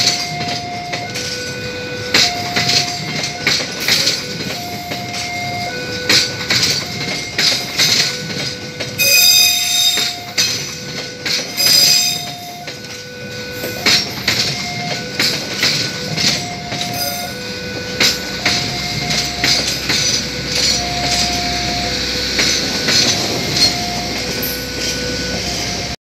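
Argo Bromo Anggrek express passenger coaches passing a level crossing, the wheels clacking over rail joints, with a brief high squeal about ten seconds in. A level-crossing warning signal sounds a repeating two-tone alarm throughout.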